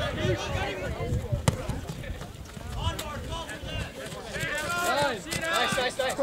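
Voices of players and spectators calling out at a soccer game, with two sharp knocks about a second and a half apart.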